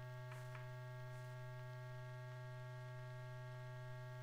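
Steady low electrical mains hum with faint higher overtones, the background hum of an old film soundtrack, with two or three faint ticks in the first half second.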